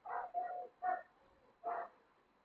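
Four short, faint pitched cries from an animal in the background, each about a quarter of a second long.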